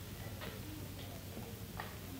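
A pause between words with the steady hiss and low hum of an old courtroom sound recording, broken by three faint clicks.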